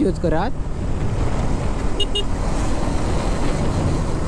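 Wind rushing over the microphone and the hum of a motorcycle riding along at road speed, with a voice finishing a phrase in the first half second. About halfway through come two quick high beeps, typical of a vehicle horn toot.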